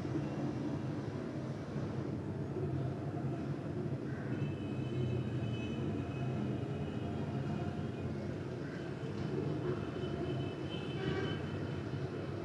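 Steady low background hum, with a few faint high tones about four to six seconds in.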